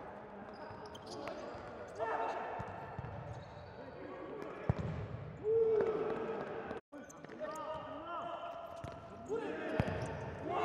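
Live sound of an indoor futsal game: players' shouts and short squeaks on the court, with sharp ball knocks about halfway through and again near the end. A brief dead-silent gap comes about seven seconds in.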